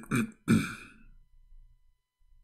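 A man clearing his throat in about three short bursts during the first second.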